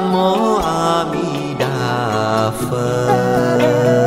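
Melodic Buddhist devotional chanting over instrumental music: long held notes that slide to a new pitch, with a fresh phrase starting partway through.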